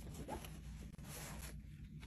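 Faint rustling of fabric and scraping handling noise as a phone is moved about against cloth.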